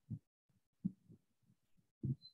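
Near-silent pause in a man's speech, broken by a few brief, faint low murmurs from his voice.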